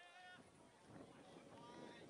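Faint, distant human shouting from the field and sideline: a high, drawn-out call at the start, then rising background noise.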